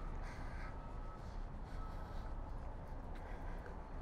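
Faint outdoor background: a low rumble with two short bird calls, about half a second and two seconds in.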